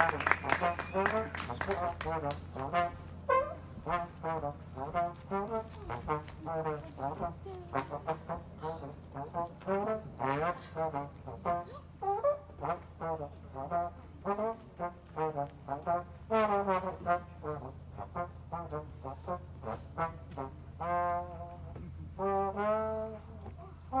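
A brass instrument playing short sliding honks, two or three a second, giving way to a few longer held notes near the end.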